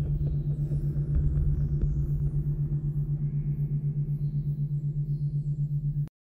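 Isochronic tone at 6 Hz, a theta-rate beat for brainwave entrainment: a low steady pitch pulsing on and off about six times a second, over a soft ambient drone.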